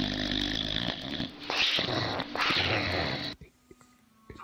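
Boxer dog snoring in its sleep: three long, growly snores in a row, each about a second, then the sound drops away abruptly near the end.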